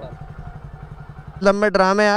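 A motorcycle engine idling with a low, even throb. A man starts talking loudly about a second and a half in.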